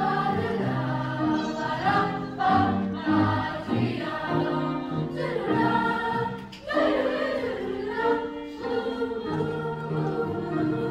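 Youth choir singing, many voices holding sustained notes together, with a brief break between phrases about six and a half seconds in.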